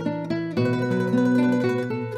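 Soundtrack music played on acoustic guitar: plucked notes over changing chords.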